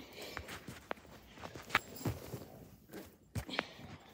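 A dog moving about on carpet close by: irregular soft knocks and clicks, about half a dozen, the loudest a little under two seconds in and a pair near three and a half seconds in.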